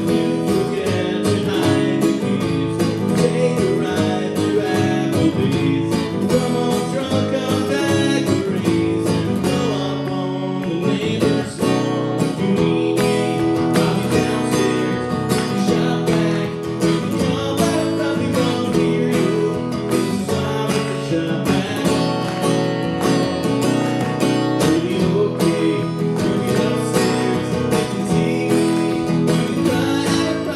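Live solo music: an acoustic guitar strummed steadily, with a man singing.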